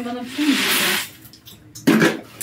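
Kitchen tap water running for about half a second, then stopping sharply, as a glass is rinsed and washed with a sponge. A loud burst comes right at the end.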